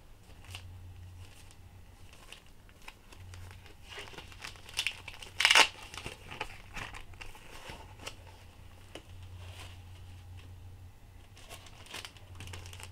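Plastic bubble-wrap packaging crinkling and rustling as it is handled and pulled open, in scattered crackles, loudest about five seconds in.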